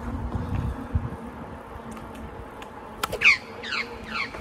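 Australian magpie swooping a cyclist: wind rumble on the microphone, then about three seconds in a sharp knock, which the rider takes for the magpie hitting his helmet, followed at once by a rapid run of harsh falling calls, about four a second.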